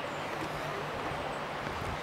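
Steady outdoor background noise, an even hiss with a faint low hum and no distinct events.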